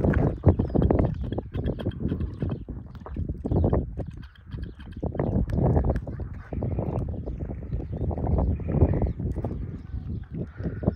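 Irregular footsteps and knocks on a debris-strewn shoreline, with a heavy, uneven low rumble of wind on the microphone.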